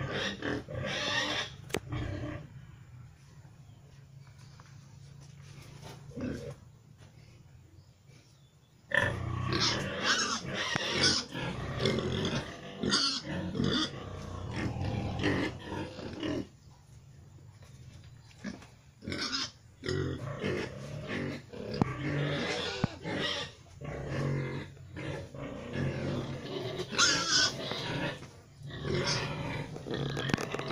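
Young three-way crossbred gilt (Pietrain × Landrace × Large White) grunting in irregular bursts, with a quiet spell of several seconds soon after the start and a shorter one past the middle.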